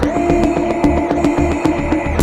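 Grime instrumental beat played from the Launchpad app's London Grime sound pack: electronic music with fast, dense percussive hits over a steady bass and held tones.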